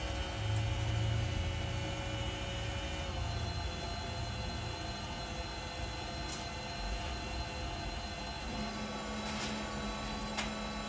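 Fuji ALM 3220 automatic laminator running, a steady motor hum and whir from its drive and heated rollers. The tones shift slightly about three seconds in, a few faint clicks come in the second half, and a lower hum joins near the end.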